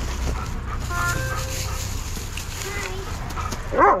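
A dog whimpering and yipping a few times, briefly, over the rustle of plastic grocery bags being handled in an insulated delivery bag.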